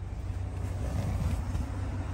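Low, steady rumbling noise of wind and handling on a handheld camera's microphone as it is swung about.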